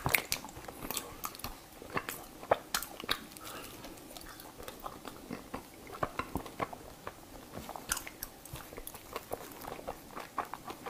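Close-miked crunching and chewing of soft, powdery freezer ice coated in matcha powder: a run of crisp crunches, thickest in the first three seconds and sparser after.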